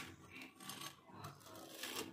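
Faint rasping of a metal spatula rubbing and scraping across a slice of toasting bread on a flat griddle.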